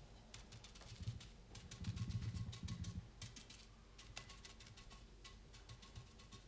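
Faint, rapid, irregular tapping and dabbing of a round paintbrush's bristles against a moulded fiberglass urn while blending mineral paint. A duller low thumping comes through between about one and three seconds in.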